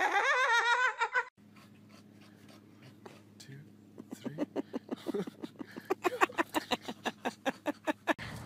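High-pitched, wavering laughter that cuts off abruptly about a second in. Then a steady low hum with a run of short rhythmic sounds, about five a second, growing louder toward the end.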